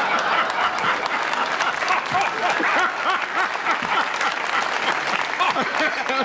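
Studio audience applauding steadily, with many voices mixed into the clapping.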